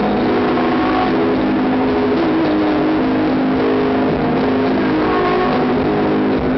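Live rock band playing loud, recorded with heavy distortion on a camera microphone. The sound is a dense wash in which held low notes change pitch every second or so.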